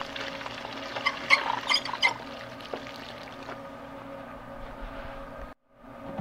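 Water from a garden hose running into a full watering can and overflowing, spilling onto the ground, with a faint steady hum beneath it. A few light clicks and knocks come about one to two seconds in, and the sound cuts out briefly near the end.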